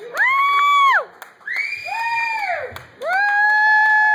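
Three long, high-pitched cheering calls from the audience at the end of a song. Each one glides up to a held pitch and falls away at the end, with short gaps between them.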